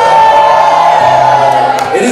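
Music playing under one long held whoop of a voice, lasting nearly two seconds, with audience cheering.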